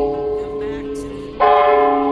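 Large brass temple bell rung, its struck tone ringing on and slowly fading, then struck again about one and a half seconds in and ringing out once more.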